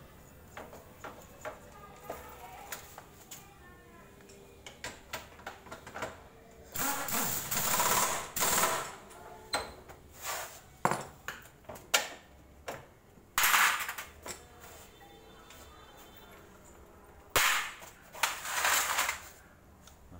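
Pneumatic impact wrench rattling in three bursts of one to two seconds each, tightening a motorbike's rear wheel back on after its drum brake has been cleaned. Sharp clicks and clinks of tools and parts being handled in between.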